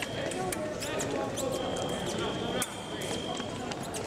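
Fencers' footwork on the piste during a foil bout: repeated sharp stamps and taps with short shoe squeaks, in the echo of a large hall, over a hum of background voices.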